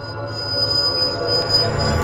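Electronic intro sound design: a sustained high whine over a low rumble and a swelling wash of noise, growing steadily louder.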